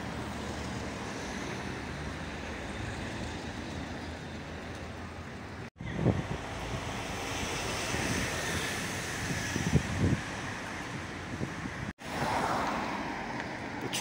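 Outdoor ambience of steady road traffic with wind buffeting the microphone in low gusts. It is broken twice by abrupt cuts, and the last stretch is louder.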